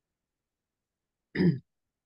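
Near silence, broken once about one and a half seconds in by a single brief vocal sound from a person.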